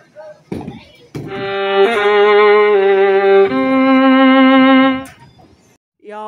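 Music, probably laid over the edit: two long held notes with a wavering pitch, the second one higher, lasting about four seconds and stopping shortly before the end. A couple of sharp knocks come just before it.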